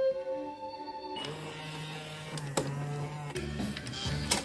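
Music playing from a CD in a Kenwood KDC-7060R car head unit cuts off about a second in. The unit's motorized stealth faceplate then whirs steadily as it opens, with a click partway through.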